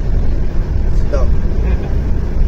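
Steady low rumble of a coach bus, heard inside its passenger cabin. A single short spoken word comes about a second in.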